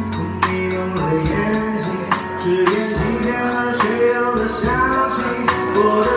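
Drum kit played along to a recorded song with a singer: regular stick strokes on the hi-hat over the backing track.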